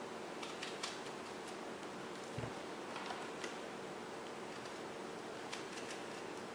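Faint, scattered clicks of a small knife slicing the stems off strawberries held in the hand, with one soft thump about two and a half seconds in, over a steady background hiss.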